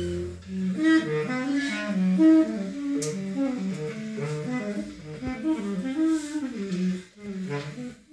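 Live acoustic jazz: saxophone and clarinet playing quick, interweaving lines of short notes. There is a light percussive tick partway through, and the playing thins out near the end.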